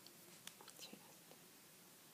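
Near silence: room tone with a few faint clicks in the first second.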